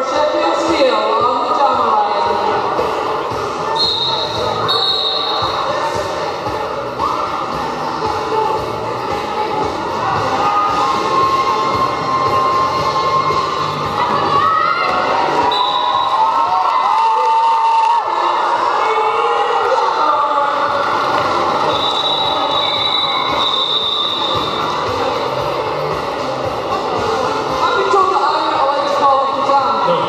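Roller derby skates rolling and clattering on a sports hall floor amid echoing crowd and bench noise, with a few short high whistle blasts.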